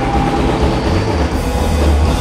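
Live rock band playing a loud, dense, droning passage.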